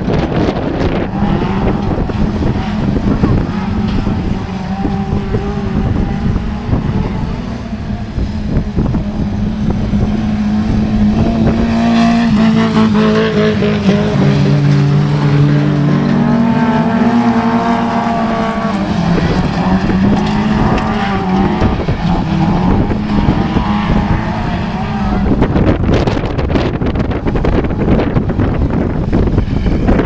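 Autograss racing cars' engines running hard on a dirt track, the note rising and falling as they lap. One car passes close from about twelve to eighteen seconds in, and its engine is loudest then.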